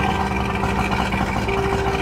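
Twin 70 hp outboard motors of an Atlantic 21 rigid inflatable lifeboat running steadily.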